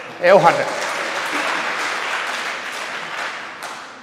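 Audience applause in a hall: it starts right after a short vocal phrase, holds steady, and tapers off near the end.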